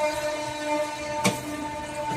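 Soft background music with long held notes, under which a spatula stirs through chicken and potatoes in a metal pan, knocking sharply against it once a little past a second in.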